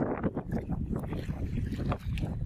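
Wind rumbling on the microphone over sea water splashing against a small wooden fishing boat's hull, with a few sharper splashes from a hooked tuna thrashing at the surface beside the boat.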